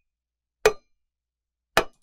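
AI-generated "sword hit on wood" sound effect: two sharp knocks about a second apart.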